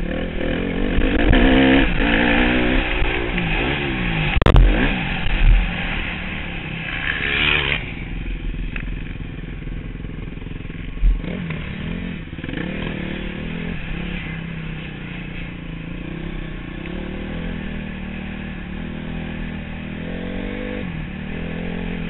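Motocross bike engine revving up and down through the gears, with one sharp knock about four and a half seconds in. After about eight seconds it runs quieter at low speed, with a few small throttle blips.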